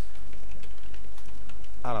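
Computer keyboard typing: a quick run of light key clicks over a steady low hum.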